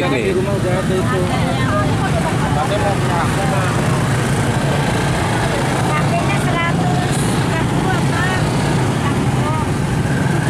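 Steady low rumble of road traffic or a running vehicle engine, even in level throughout, with faint voices talking over it.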